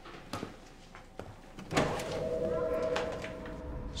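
Film sound effects: a few faint clicks, then a sudden sweep about two seconds in that leaves a steady tone ringing for over a second before it fades.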